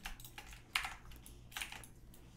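A few separate computer keyboard keystrokes, spaced irregularly, as shortcut keys are pressed.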